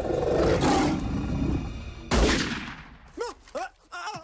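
Film soundtrack: a lion roaring as it charges, then a single loud rifle shot about two seconds in that rings off as it fades. A few brief cries follow near the end.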